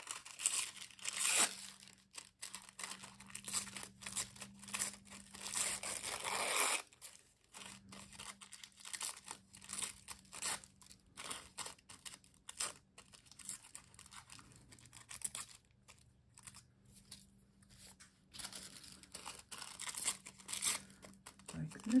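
Thin printed paper being torn by hand into small pieces, with crinkling rustles as it is handled. The tearing is loudest in the first seconds and again from about three to seven seconds in, then turns into quieter small tears and rustles, over a faint steady hum.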